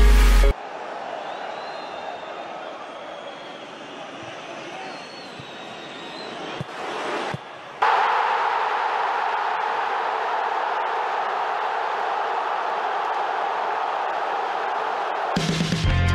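Stadium crowd noise: a steady murmur with a few faint whistles, then a sudden, much louder cheer about halfway through as a goal goes in, held until music comes in near the end.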